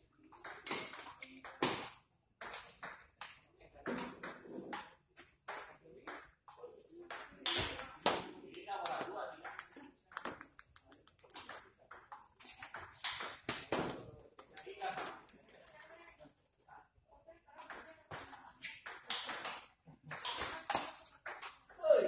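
Table tennis rallies: the ball clicks sharply off the paddles and bounces on the table in quick succession, with a brief pause between points.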